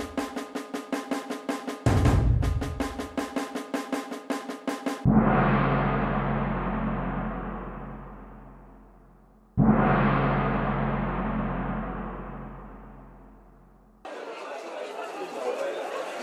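Dramatic intro music: a fast, even percussive beat with pitched tones, then two deep, ringing impacts about four and a half seconds apart, each fading away slowly. Near the end it gives way to the open-air ambience of a stadium.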